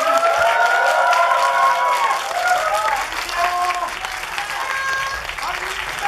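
Applause from an audience, with several high voices calling out over it, loudest in the first two seconds and thinning out after.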